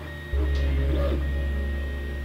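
MakerBot desktop 3D printer running, its stepper motors whining in shifting tones as the print head moves. Under it is a loud low steady hum that starts about a third of a second in.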